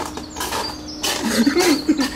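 A man sobbing noisily, breaking into short choked wailing cries that come in quick pulses from about a second in.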